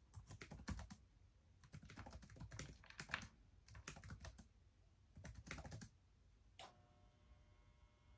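Laptop keyboard typing in quick bursts of keystrokes with short pauses between them. The typing stops about six seconds in, leaving one more tap and a faint steady tone.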